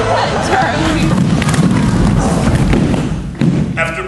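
A group of people dropping onto a stage floor, a jumble of thuds and thumps under shouting voices, easing off about three and a half seconds in.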